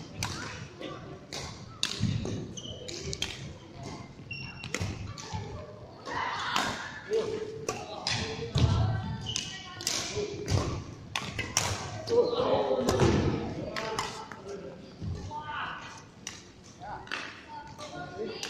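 Badminton rackets striking a shuttlecock, sharp pops at irregular intervals, with thuds of footfalls and voices of players in the hall.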